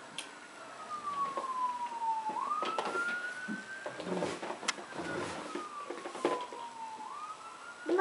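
A fire truck siren from a TV speaker, wailing: one tone that slowly falls over a couple of seconds and then climbs back up, twice. A few short knocks and rustles come through in the middle.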